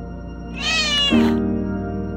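A tabby-and-white cat meows once, a single call a little under a second long that rises and then falls in pitch, about half a second in. It sits over soft ambient music with sustained chords, one new chord coming in just after the meow.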